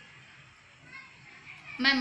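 A pause in a woman's recitation of Urdu poetry: quiet room tone with faint distant voices about a second in. Her speaking voice comes back just before the end.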